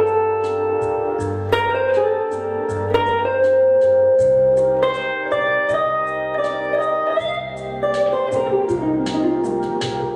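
Archtop hollow-body electric guitar played solo in chord-melody style: a sustained melody over plucked bass notes and chords. Near the end the melody note slides down in pitch.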